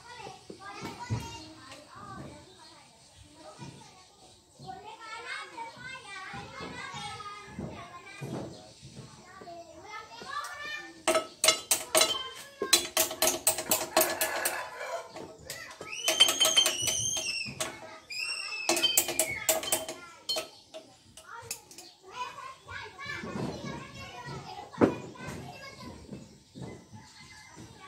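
Children's voices and shouts carry on in the background, with a couple of high squeals near the middle. In the middle, a quick run of sharp metallic clicks and clanks with a slight ring is the loudest sound. It comes from hands and tools working at the rear wheel hub.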